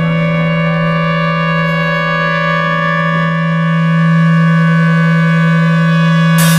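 A live band holding one sustained chord: several steady notes droning without rhythm or change, swelling slightly about four seconds in.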